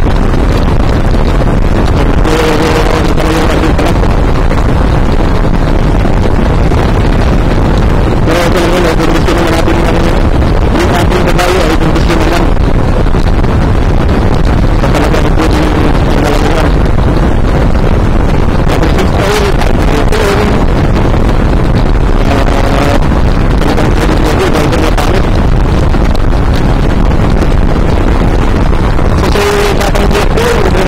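A motorcycle riding at road speed: loud, steady wind noise on the microphone over the running engine.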